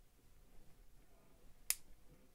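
Two snap-fit plastic parts of a Bandai 1/12 stormtrooper model kit's helmet being pressed together, with one sharp click near the end as they seat into place.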